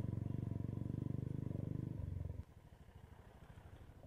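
Royal Enfield Bullet motorcycle's single-cylinder engine running with an even, fast beat, then dropping much quieter a little over two seconds in.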